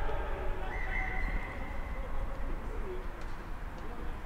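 Rugby players' shouted calls on the pitch, short rising-and-falling cries over a low rumble, with a brief steady high tone about a second in.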